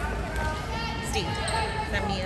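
Voices of players and spectators talking and calling in a gymnasium, with a few dull thumps of a ball bounced on the hardwood court.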